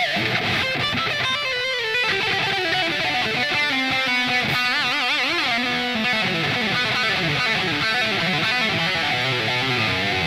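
Electric guitar, a three-pickup Destroyer, played as metal-style lead: quick runs of notes, with held notes shaken in a wide vibrato around the middle and falling runs after.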